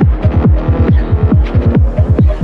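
Melodic techno: a loud, steady beat of deep kick and bass hits, each one dropping in pitch, under sustained synth chords.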